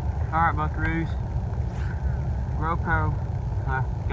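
A person's voice in a few short, indistinct bursts over a steady low rumble.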